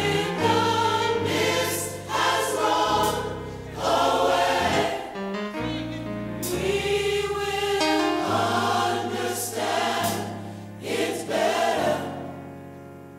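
Gospel mass choir singing in harmony over instrumental backing, in long sustained phrases.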